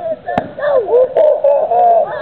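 One sharp crack of a stick striking a piñata, followed by children's high-pitched shouting and excited voices.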